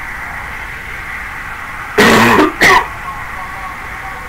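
A man clears his throat twice about halfway through, a long rough rasp and then a short one, over a steady background hiss.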